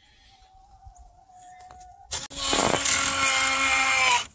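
Omlet automatic chicken coop door's motor running against a door frozen shut with ice. A faint steady whine is followed, about two seconds in, by a loud, steady whirring hum.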